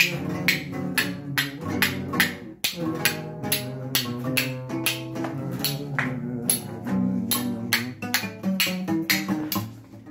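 Acoustic guitar played briskly in an instrumental break of a Peruvian vals, a dense run of sharp strums over sustained notes, with hand claps keeping time.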